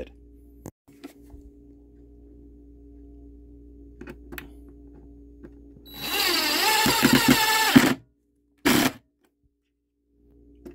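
Cordless drill-driver driving a wood screw into a wooden block for about two seconds, its motor pitch wavering under load, then a brief second burst of the drill. Before it there are several seconds of faint steady hum with a few light clicks.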